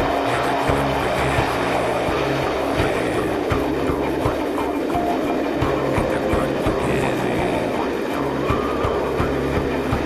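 Class 37 diesel locomotive's English Electric V12 engine droning under power, heard from inside a hauled coach, its pitch stepping up and down every couple of seconds, with the rumble and irregular clatter of the coach's wheels on the rails.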